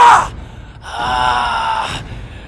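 A man's strained cries of effort, as in combat: a rising cry that peaks and breaks off right at the start, then a second cry held for about a second from midway.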